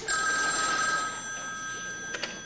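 A telephone ringing in a hotel room as an operator puts a call through: one long, steady ring.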